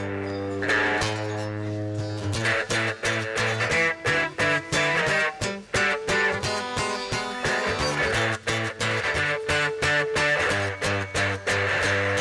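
Guitars strumming chords in a steady rhythm, an acoustic guitar among them, with a sustained low note underneath.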